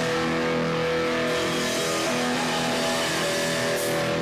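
Live hardcore band's distorted electric guitars and bass holding ringing, sustained chords with no drums under them; a cymbal crash comes in near the end.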